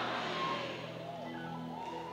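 Soft, sustained keyboard chords held steady under the sermon, while the reverberation of the preceding loud speech dies away in the first second.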